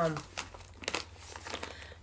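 Plastic snack pouch crinkling as it is handled and turned over, in a few scattered short crackles.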